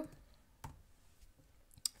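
Two computer keyboard key clicks about a second apart, faint against room tone.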